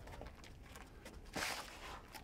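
Faint shuffling footsteps of bare-knuckle boxers moving about, over a low rumble, with a short hiss of noise about one and a half seconds in.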